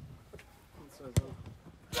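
A football kicked sharply once about a second in, with a fainter knock earlier and faint players' voices. A loud shout of "Bravo!" begins right at the end.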